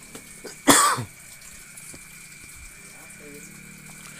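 A single short cough, about a second in, from the male voice-over narrator, with a faint steady high whine and low hum behind it.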